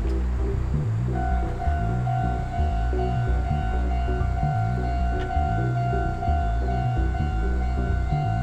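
Electronic background music with a steady beat, over a Japanese level-crossing warning bell that starts about a second in and dings evenly about twice a second, the signal active as its red lamps flash.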